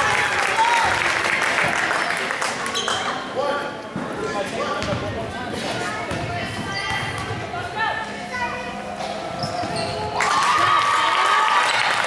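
Basketball bouncing on a gym floor as a player dribbles at the free-throw line, amid crowd voices and shouts echoing in the gym. The crowd grows louder about ten seconds in.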